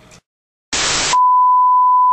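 About half a second of TV static hiss, then a steady test-pattern beep tone, the sound of a 'technical difficulties' colour-bars card.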